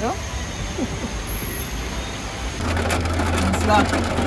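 Outdoor night background with brief voices, then, after a cut about two and a half seconds in, a steady low hum inside a car's cabin from the idling engine, with voices over it.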